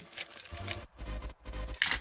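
Brass 7.62x39 cartridges clicking and clinking as they are set by hand into the slots of a 75-round AK drum magazine, with a louder clink just before the end.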